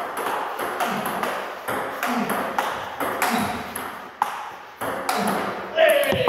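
Table tennis rally: the ball clicking sharply off the paddles and the table in quick alternation, about three hits a second.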